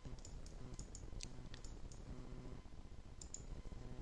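Scattered faint computer mouse and keyboard clicks over a low, steady hum.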